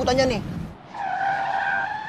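A long, steady, high-pitched squeal that starts about a second in and holds at an almost unchanging pitch.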